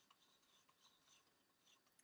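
Near silence, with faint light scrapes and small ticks scattered throughout from a plastic cup being handled in a bowl of hot water.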